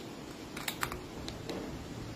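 A handful of light plastic clicks as the parts of a small plug-in charger casing are handled and fitted together.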